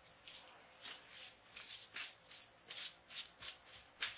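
A quick run of short, dry, scratchy rustles, about three a second, starting faint and growing somewhat louder.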